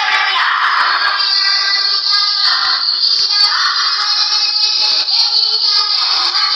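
A boy singing into a microphone over a loudspeaker in long, wavering notes, with a thin, tinny sound and no bass.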